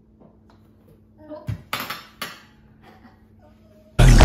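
Spoon and dishes clinking at a meal: a few light clinks, the two loudest about half a second apart around two seconds in.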